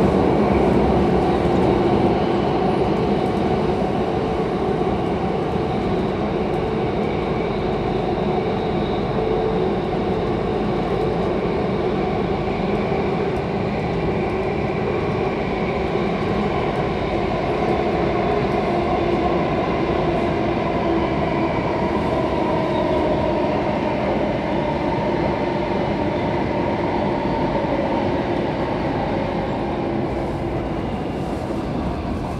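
Alstom Metropolis C751C metro train heard from inside the car as it runs through a tunnel: a steady rumble of wheels on rail with a few faint steady tones over it.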